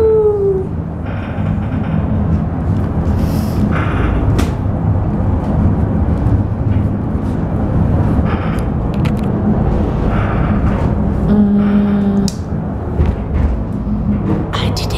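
Interior of a moving cable car: a steady low rumble and hum from the car's running. Scattered rustles and light knocks come from the camera brushing against clothing and a bag.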